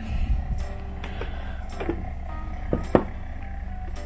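Nespresso Aeroccino3 milk frother running on its hot setting, a steady low hum as it heats and froths the milk. A few light clicks of handling come about a second, two seconds and three seconds in.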